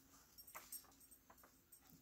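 Near silence with a few faint rustles and light ticks of paper journal pages and inserts being handled and turned.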